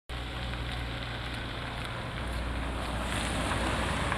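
Steady outdoor street ambience: a low rumble with an even hiss over it, wind on the microphone, growing slightly louder toward the end.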